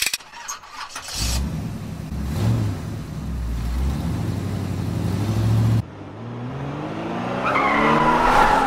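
Car engine sound effect: an engine running with a couple of short revs, cutting off abruptly about six seconds in, then revving up in a steady rising pitch.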